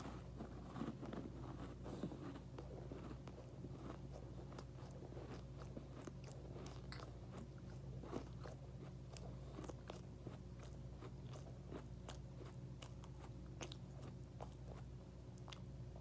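A person chewing a mouthful of chocolate chip cookie with the mouth closed: faint, irregular crunching and small clicks throughout, over a steady low hum.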